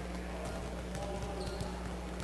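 Volleyballs bouncing on the court floor and being served, scattered light thumps over a steady low hum and background voices of a large hall.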